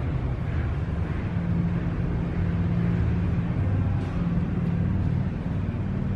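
A steady low mechanical hum with a rumble beneath it and a faint hiss above, unbroken throughout.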